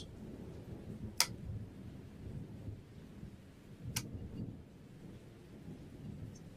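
Two sharp clicks about three seconds apart as a DDR2 laptop RAM stick is pressed into its memory slot on the motherboard, with faint handling noise between them.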